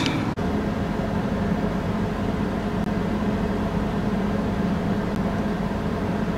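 Steady hum inside a stationary car's cabin: a low, even tone over a faint hiss, with a brief drop-out just after the start.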